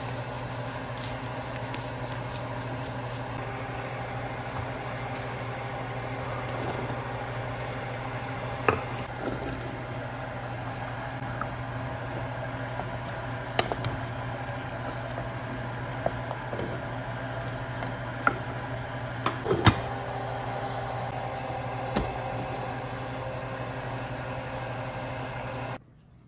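Cooking sounds from a pot of chicken stew on a gas stove: a wooden spoon stirring potatoes and carrots, with a few sharp knocks of the spoon against the pot, over a steady low mechanical hum.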